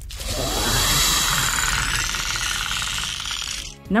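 Film sound effect of a xenomorph alien hissing: a long, harsh hiss with a fast rattle running through it, over music, breaking off shortly before the end.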